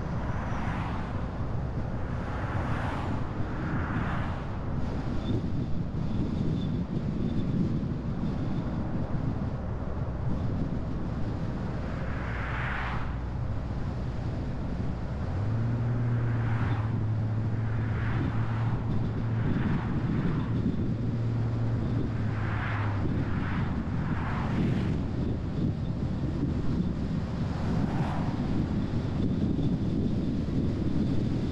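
Steady road and tyre rumble with wind noise from a car driving along a two-lane highway. Several brief whooshes come from oncoming vehicles passing. A low steady hum joins the rumble about halfway through and fades out some seven seconds later.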